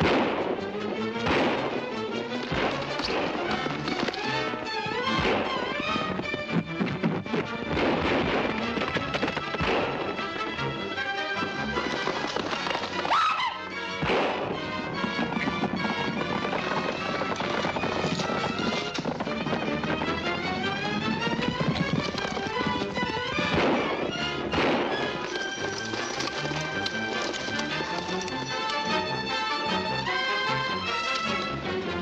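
Dramatic orchestral film score, with sharp gunshots from six-guns breaking in every few seconds.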